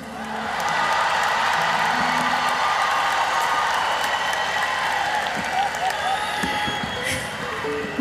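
Large concert audience cheering and applauding, with scattered whoops, swelling within the first second and easing near the end.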